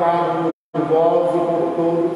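Slow liturgical chant sung in long held notes. The sound cuts out for a moment about half a second in.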